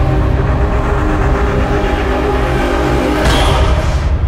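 Loud cinematic logo-intro music with dense, sustained low tones, and a bright swoosh rising in about three seconds in as the logo resolves.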